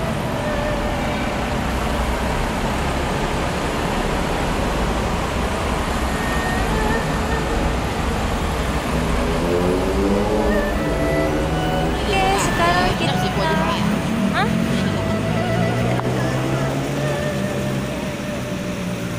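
Busy city street traffic: cars, taxis and double-decker buses running past in a steady, loud rumble. Voices of people close by join in about halfway through.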